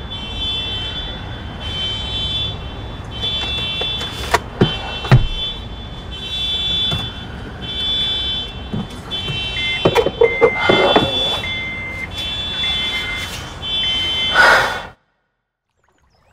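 A car alarm sounding in a parking garage: a high electronic tone pattern repeating about once a second, with a second, lower beep joining in about halfway through and a few louder sudden sounds in between. It cuts off suddenly near the end.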